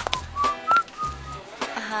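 A man whistling a few short notes casually, over a hip-hop beat with bass and drum hits. A woman's voice comes in at the very end.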